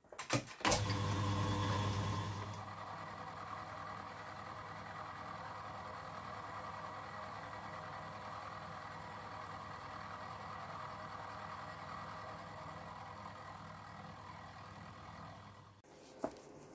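Milling machine starts with a couple of clicks, then its spindle runs with a steady hum as the end mill works along the side of a cast-iron axle box. The sound is louder for the first two seconds, then steady until it stops just before the end.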